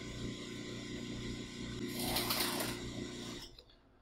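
A small electric motor runs steadily and stops near the end, with a short rush of hiss about two seconds in.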